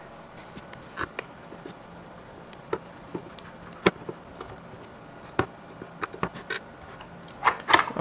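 Sparse, light clicks and taps at uneven intervals from handling a small plastic project enclosure as its screws are taken out and the case is opened.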